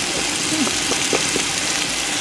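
Tomato and onion masala sizzling steadily in a pot over a fire, with a few faint clicks.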